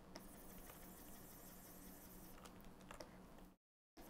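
Near silence: room tone with a faint steady hum and a few faint, scattered clicks from desk work at a computer. The sound cuts out completely for a moment just before the end.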